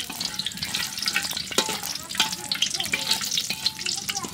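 Whole cardamom and cinnamon sizzling and crackling in hot oil in a metal karahi, while a metal spatula stirs and scrapes across the pan.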